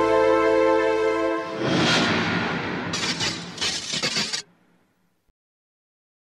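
Closing theme music of a TV series: a held chord, then a rushing swell about two seconds in and two noisy crashing bursts. It cuts off into silence about four and a half seconds in.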